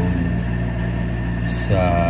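A steady low hum throughout, with a short bit of voice near the end.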